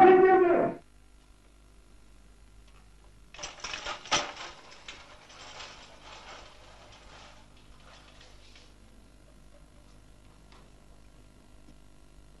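A man's voice breaks off in the first second. From about three seconds in comes a few seconds of light clattering and rattling, with one sharp knock near four seconds, dying away by about nine seconds.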